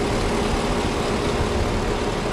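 Electric radiator cooling fans of a Holden VE Calais V8 running hard over the idling engine: a steady, loud rush of air with a constant hum. The fans are on because the coolant has reached about 104 °C, their switch-on temperature.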